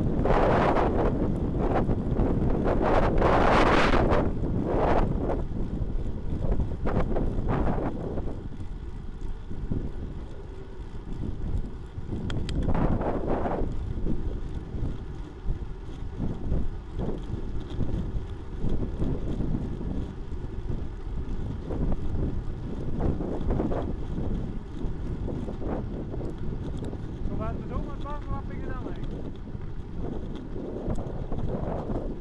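Wind buffeting the microphone of a handlebar-mounted camera on a moving road bike, a steady rumble with strong gusts in the first few seconds and again about halfway through.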